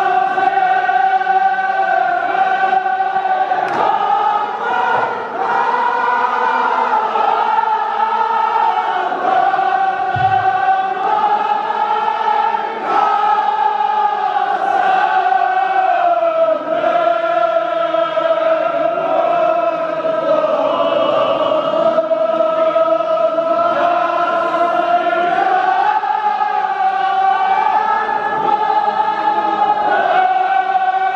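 A chorus of men chanting a Kashmiri marsiya, a Shia mourning elegy, in long, drawn-out held notes that rise and fall slowly.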